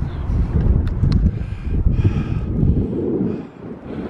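Wind buffeting the camera microphone: a loud, gusting low rumble that eases for a moment near the end.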